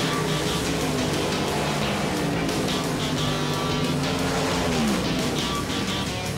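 Background music with a race car engine running underneath it, its pitch dropping away about five seconds in.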